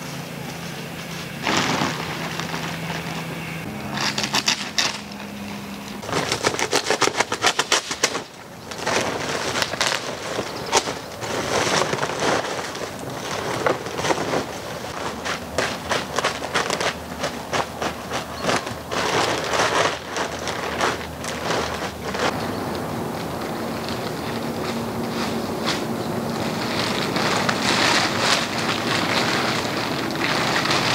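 Crinkling and rustling of a large woven polypropylene bulk bag and its plastic liner being pulled open and handled, in a long run of irregular crackles.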